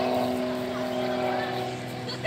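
Aerobatic airplane's engine heard from the ground, a steady drone with a humming pitch as the plane climbs vertically.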